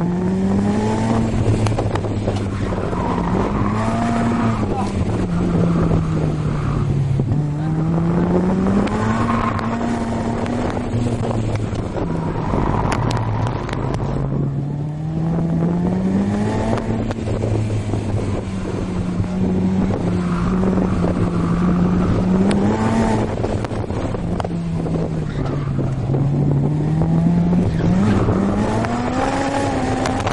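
Honda S2000's four-cylinder engine under hard driving on a race track, heard from the open-top cockpit. Its note climbs and falls over and over, about every five or six seconds, as the car accelerates out of corners and brakes into them.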